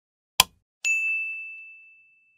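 A short sharp hit about half a second in, followed by a single bright ding that rings on as one high tone and slowly fades.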